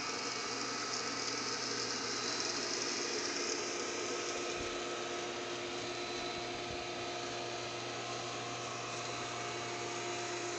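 A steady mechanical hum with a constant hiss over it, holding the same few tones without change.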